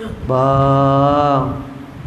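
A man's voice drawing out one long, level-pitched "baaa" for about a second, imitating the eerie voice heard in a haunted house.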